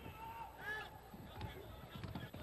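Low arena crowd noise during basketball play, with a brief high-pitched cry about two-thirds of a second in.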